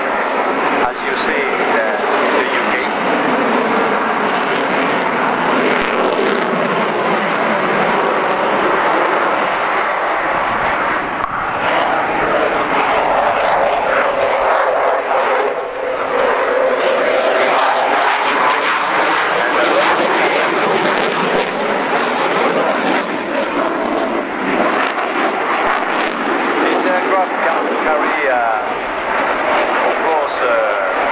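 Dassault Rafale fighter's twin jet engines running loud on afterburner during a display flight, a continuous jet noise whose pitch sweeps down and back up near the middle as the jet passes.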